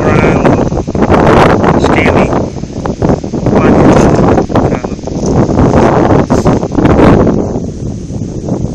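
Wind buffeting a phone's microphone: a loud, uneven rumble that surges and eases every second or two.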